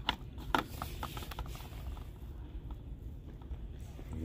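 Plastic blister-packed diecast cars clicking and rattling against metal peg hooks as they are handled, with a cluster of sharp clicks in the first second and a half, over a low steady hum.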